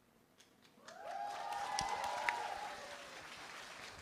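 Audience applauding, starting about a second in after a brief hush and slowly dying down.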